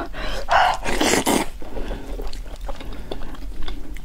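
Close-miked wet mouth sounds of biting and eating a sauce-coated braised beef knuckle. A few louder wet bursts come in the first second and a half, followed by many small sticky clicks and crackles of chewing and tearing the meat.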